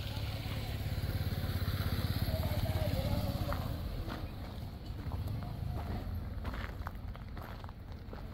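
A motor vehicle engine, with the character of a motorcycle, running nearby. It grows louder over the first three seconds and then fades away. A faint distant voice and a few light clicks are heard in the second half.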